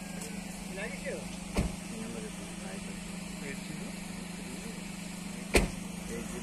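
A steady low hum with faint voices in the background, broken by two sharp knocks, one about a second and a half in and one near the end.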